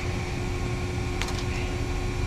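Steady low hum of running industrial machinery with a faint constant tone, and a couple of light clicks just over a second in.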